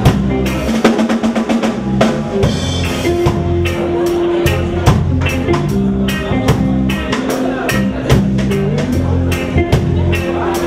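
Live reggae band playing: drum kit, bass guitar and electric guitars over a steady beat, with held bass notes and regular drum hits.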